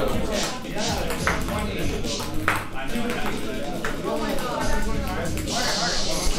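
Ping-pong balls bouncing on a hard surface: a few sharp, separate ticks about a second or more apart, over chatter and background music.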